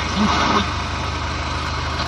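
Mazda RF 2.0-litre four-cylinder diesel in a 1985 Ford Escort idling steadily, heard from inside the car. It has just started after sitting three years on old fuel, and runs even though its intake air preheater has burned out.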